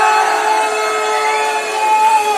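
A man's voice over a PA system, holding one long, steady note as the ring announcer draws out the winner's name.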